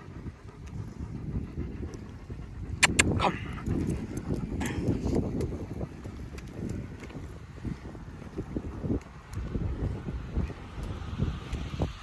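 Wind rumbling on the microphone with the uneven footfalls of a walk on pavement, and a few sharp clicks about three seconds in and again a little later.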